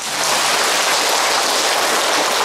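Large seated audience applauding: many hands clapping together in a dense, steady patter.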